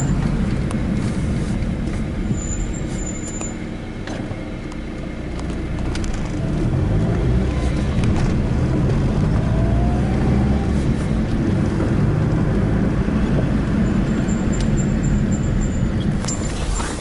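A car's engine and road noise heard from inside the cabin while driving: a steady low rumble that eases off a few seconds in and grows louder again from about six seconds in.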